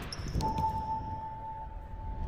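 Basketballs bouncing on a hardwood court, set in a promo's sound design. A steady electronic tone comes in about half a second in and holds over a low rumbling bed.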